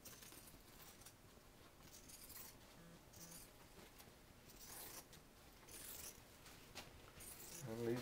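Scissors cutting Poly-Fiber aircraft covering fabric, a few faint snips spaced a second or so apart as the excess is trimmed from the edge of the frame.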